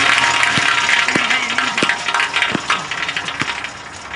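A basketball bouncing on a concrete court, five dull thuds spaced a little under a second apart, under a loud rushing noise that starts suddenly.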